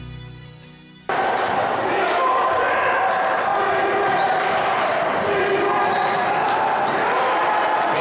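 Live basketball game sound: the ball bouncing on the hardwood court with players' and spectators' voices echoing around the gym, starting abruptly about a second in as soft guitar music cuts off.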